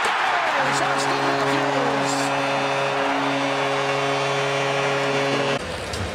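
Arena goal horn sounding one steady chord of several tones for about five seconds over a cheering crowd, signalling a home-team goal. It cuts off suddenly near the end.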